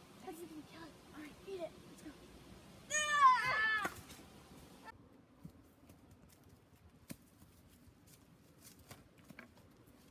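An animal cry, loud and wavering, lasting about a second, about three seconds in, after a few faint short calls. It falls quiet after that, with a few soft clicks.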